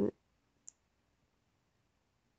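A single short, sharp click just under a second in, right after the end of a spoken word; otherwise near silence.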